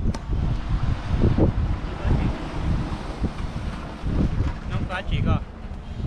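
Wind buffeting the microphone in gusts: a loud, uneven low rumble that rises and falls.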